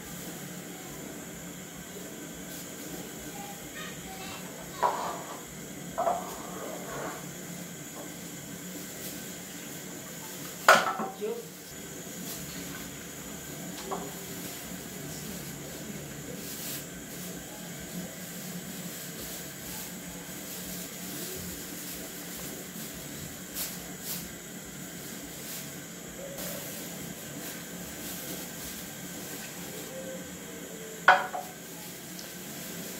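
Occasional sharp knocks and clatters of a cooking pot and utensils over a steady background hiss, the loudest knock about eleven seconds in.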